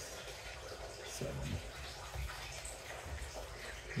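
Quiet room noise with a low, even hiss, and a brief faint voice about a second in.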